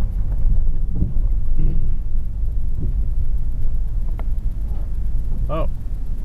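Jeep Commander driving slowly on a dirt road, heard from inside the cabin: a steady low rumble of engine and tyres on the unpaved track.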